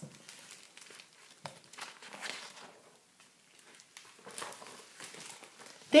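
A few faint, soft rustling swishes with quiet gaps between them, with no pitch to them.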